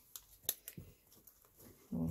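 A few light, sharp clicks of small scissors being handled and snipped open and shut, the loudest about half a second in.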